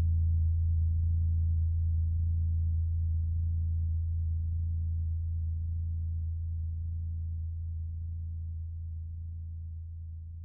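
Low, steady electronic drone of an ambient track: a deep hum with faint overtones above it, fading out gradually as the track comes to its end.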